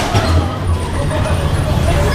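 Bumper car running with a low rumble, with a man and a boy laughing and calling out over it.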